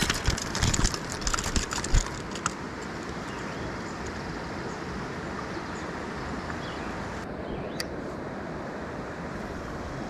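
A quick cluster of clicks and rustles in the first two seconds or so as a rainbow trout is handled in a rubber-mesh landing net, then a steady rushing hiss of stream and outdoor noise.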